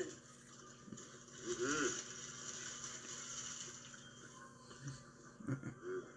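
Quiet room tone with a faint steady hum, a short hummed 'mm' from a man about a second and a half in, and a few small clicks.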